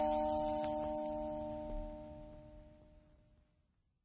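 The final held chord of background music, several notes ringing together, slowly fading out until it is gone a little before the end.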